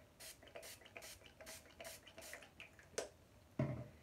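Witch hazel and rose petal facial toner spritzed from a pump mist bottle: about six short hissing sprays, roughly two a second, followed by a single click near the end.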